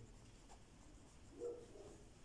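Faint scratching of a pen writing a word by hand on a paper workbook page.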